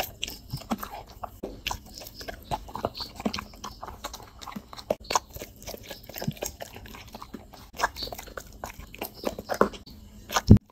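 A dog chewing and eating soft food, noodles taken from a hand and off a plate, with many quick, irregular wet chewing clicks and smacks.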